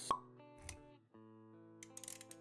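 Intro music with sound effects: a sharp pop just after the start, a soft low thump about half a second later, then held musical notes and a quick run of clicks near the end.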